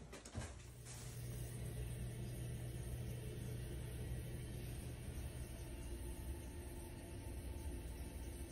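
Steady low hum with a faint rush of air from a fan running in the room's air system.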